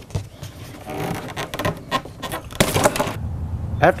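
Plastic tie-wrap strapping being cut with scissors and pulled off a cardboard box: a few sharp clicks and snips, then a louder scraping rustle about two and a half seconds in.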